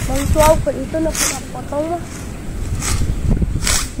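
People's voices talking, without clear words, over wind rumbling on the microphone, with short hissing swishes about a second in, around three seconds and near the end.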